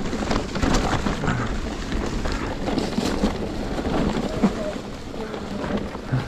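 Orbea Wild e-mountain bike's 29-inch tyres rolling over dry leaves and dirt on a descent, with a steady rumble of wind on the microphone and frequent small clicks and rattles from the bike over the rough ground.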